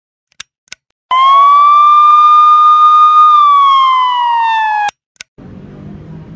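A single loud electronic tone starting about a second in, rising slightly, holding steady, then gliding down in pitch before cutting off suddenly, with a few sharp clicks before and after it. A low steady hum with hiss follows near the end.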